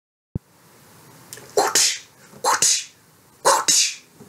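A person sneezing three times, about a second apart, each a short voiced intake breaking into a loud hissing burst. A brief click sounds just before the first.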